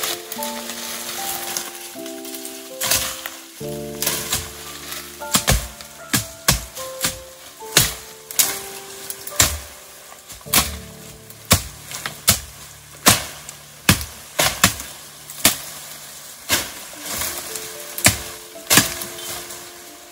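Background music with held notes changing step by step. Over it, dry twigs, stems and grass crackle and snap in many sharp, irregular clicks as someone pushes through dense dry bush on foot.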